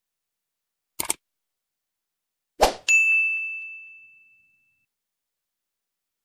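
Subscribe-button animation sound effect: a quick double mouse click about a second in, then another click and a bright notification-bell ding that rings and fades out over about two seconds.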